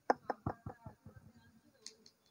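A quick run of about five knocks, roughly five a second, the first loudest and the rest fading away, followed near the end by a brief faint hiss.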